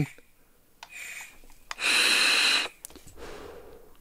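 A short faint draw about a second in, then a hard direct-lung draw through a sub-ohm vape tank: a loud airy hiss of about a second. It is followed by a softer, longer exhale of the vapour.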